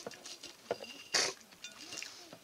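A person eating: chewing and mouth sounds, with a short hissing burst a little past halfway.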